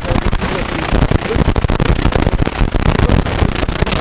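Loud wind buffeting on a handheld interview microphone: dense rumbling, crackling noise that all but drowns a man's voice speaking beneath it. It cuts off abruptly right at the end.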